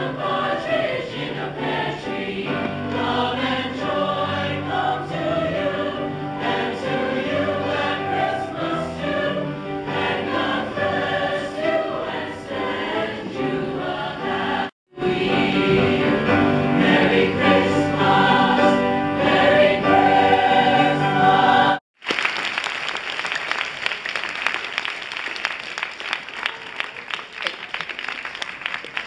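Mixed choir singing, heard as two excerpts joined by an abrupt cut. After a second cut, about three-quarters of the way through, an audience applauds.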